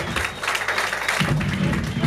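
Live rock band playing, with drum kit and cymbals crashing and a bass guitar, as applause from the small audience mixes in. A low bass note comes in about halfway through.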